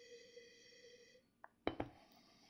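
A wine glass set down on a wooden table: a small click and then two light knocks near the end. Before it, a faint steady high-pitched whistle lasts a little over a second and then stops.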